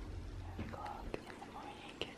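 A faint whispering voice with a few light clicks.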